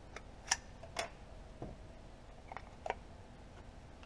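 Faint, sharp plastic clicks and taps as a GoPro Hero 7 Black is handled and fitted into an Ulanzi plastic camera case. The two clearest clicks come about half a second and one second in, with a few softer ones later.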